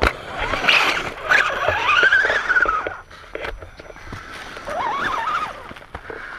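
Electric motor and gears of a radio-controlled rock crawler whining under load, the pitch wavering up and down with the throttle in two spells, one long and one short near the end, mixed with knocks and scrapes of tyres and chassis on rock.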